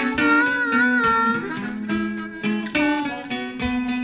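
Electric blues band playing an instrumental fill between sung lines: a harmonica holds long, slightly wavering notes, then plays shorter phrases over guitar accompaniment.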